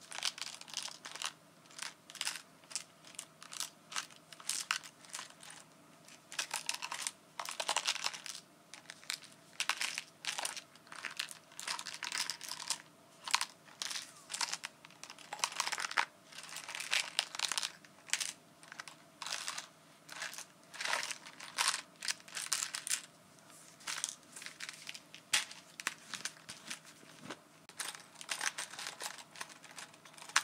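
Plastic buttons rattling and clicking against each other and the glass inside a small glass jar as it is turned and tilted in the hands, a close, dense run of irregular sharp clicks.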